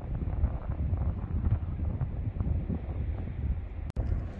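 Wind buffeting the microphone outdoors: an uneven, low rumble.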